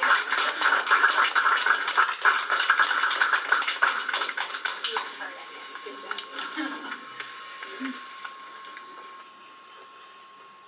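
Small audience applauding after a snare drum solo. The clapping is loud for about five seconds, then thins out and fades.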